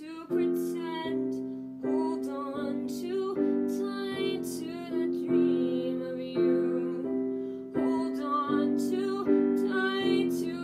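Solo piano playing a slow accompaniment of chords struck roughly once a second, with a woman singing over it.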